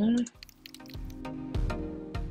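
Quiet computer keyboard typing, a run of irregular key clicks as a search term is typed, over soft background music with held notes.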